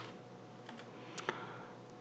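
A few faint, scattered clicks from a computer keyboard, about three keystrokes spread over a couple of seconds.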